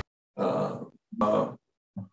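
A man's voice making two short grunt-like sounds, each about half a second long, with dead silence between them.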